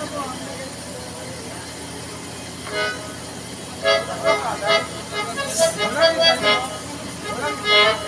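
Room background noise, then from about four seconds in a harmonium playing a run of short notes, with voices in the room.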